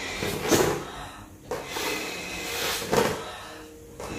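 A person inflating a latex balloon by mouth: long breaths blown into the balloon, with a sharp, louder gust of breath about half a second in and again at about three seconds.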